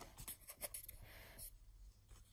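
Faint rustle and soft ticks of a paper page in a book being turned by hand.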